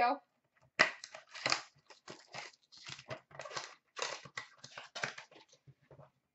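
Foil wrapper of a 2015-16 Upper Deck SP Game Used hockey card pack crinkling in a run of irregular crackles as it is handled and opened.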